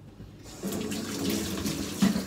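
Kitchen tap turned on about half a second in, water running from it into a stainless steel sink.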